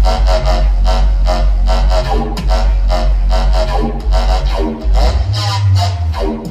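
Bass music (dubstep) from a DJ set, played loud over a club sound system: a heavy, steady sub-bass under a pitched synth that pulses several times a second.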